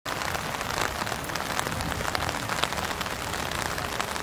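Steady rain falling, with a dense patter of individual drops ticking close by.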